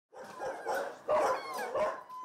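Several dogs barking at once in shelter kennels, their calls overlapping, with a louder stretch in the second half.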